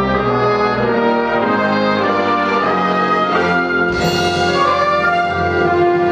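Big band playing together: trumpets, trombones and saxophones sounding full held chords that change every second or so, with a bright accent about four seconds in.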